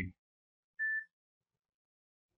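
A single short electronic beep, one steady high tone lasting about a third of a second, just under a second in.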